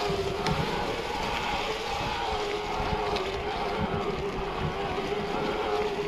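Mountain bike riding down a leaf-covered trail: tyres rumbling over the ground, wind on the microphone, and a steady, slightly wavering whine from the bike.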